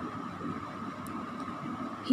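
Low, steady background hiss of room tone between spoken phrases, with a faint steady tone in it and no distinct event.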